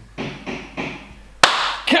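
Three short bursts of laughter, then a single sharp knock or thud about a second and a half in.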